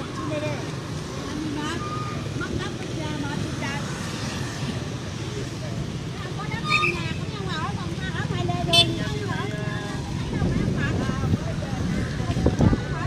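Steady road traffic noise with people talking in the background. Two brief sharp sounds stand out, at about seven and nine seconds in.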